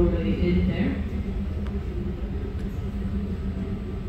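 Steady low rumble of a gas-fired glassblowing glory hole furnace burning, with a voice heard briefly in the first second.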